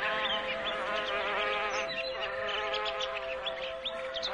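Slow relaxation music of long held tones, with birdsong over it: many quick, high chirps and short whistles following one another.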